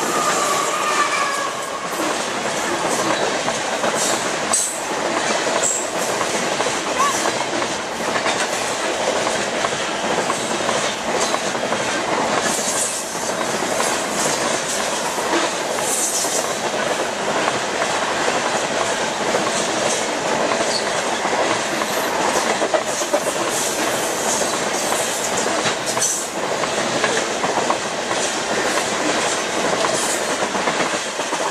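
CSX Tropicana juice train's refrigerated boxcars rolling past close by: steady wheel rumble and clatter over the rail joints, with brief high wheel squeals a few times.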